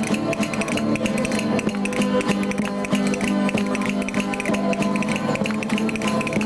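Traditional Spanish string band of strummed guitars and a long-necked plucked lute playing a jota, with fast, even strokes over a steady held note.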